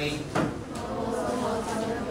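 A class of students reading an English sentence aloud together, with one sharp knock about half a second in.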